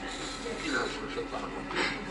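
Indistinct voices of people talking in a small room, with a brief hiss near the end.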